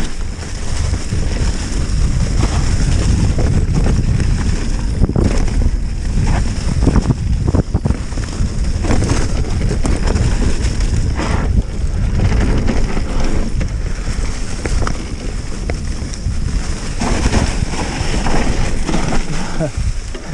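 Mountain bike descending a leaf-covered dirt trail: a steady rush of wind on the action camera's microphone, with tyres rolling over dry leaves and dirt and the bike clattering and knocking over bumps.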